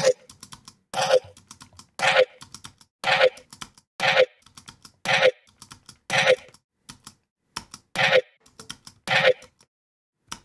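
A looped, resampled dubstep bass sound playing through Serum FX's downsample distortion and comb filter, with the filter's frequency and resonance being turned. It repeats as a short, clicky hit about once a second, with small ticks between the hits.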